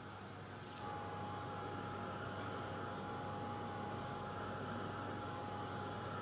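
Handheld hair dryer switched on about a second in, then blowing steadily with a constant whine to dry wet paint.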